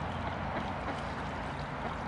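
Steady rush of water: an even hiss with no separate splashes standing out.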